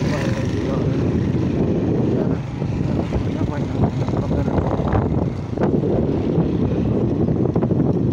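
Suzuki 150 motorcycle's single-cylinder four-stroke engine running under way, with wind buffeting the microphone.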